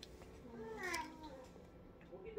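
A child's voice making a faint, drawn-out sound that slides down in pitch, about half a second to a second in.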